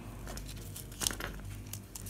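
Glitter fabric crinkling and rustling as fingers fold and squeeze it, with the clearest rustle about a second in. A steady low hum from a tumble dryer runs underneath.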